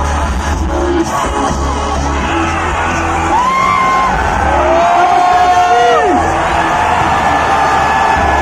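Loud music with heavy bass over a festival sound system, the bass dropping out around the middle. Crowd cheering and whooping over it, with long shouts about halfway through.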